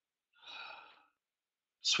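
A single audible breath from the lecturer, a short sigh-like rush of air about half a second in, before speech resumes right at the end.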